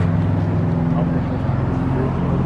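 Car engine idling steadily, a low even rumble, with people talking over it.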